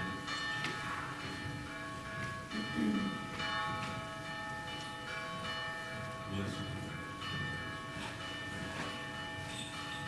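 Bells ringing: a cluster of sustained, overlapping tones renewed by irregular strikes about once or twice a second, with a faint low voice heard briefly.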